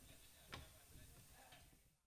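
Near silence: faint room tone with one soft knock about half a second in, fading out to nothing near the end.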